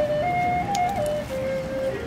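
Music: a simple flute melody stepping between a few notes, then holding one long, lower note from a little past halfway.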